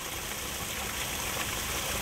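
Steady rush of water pouring down in a cone-shaped sheet from a water-vitalizing fountain and splashing onto a pond surface.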